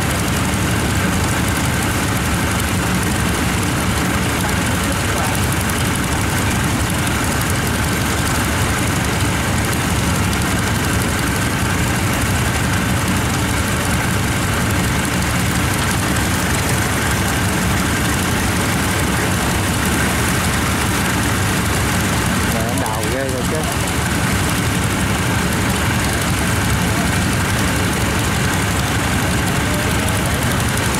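Diesel engine of a tracked rice-harvesting machine idling in a steady, even drone.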